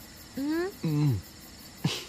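Crickets chirping steadily in a high, even, pulsing chorus.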